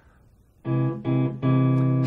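Parker electric guitar on a clean tone sounding a C augmented triad (C, E, G-sharp) in three strokes about half a second apart, starting about half a second in, with the last one left ringing.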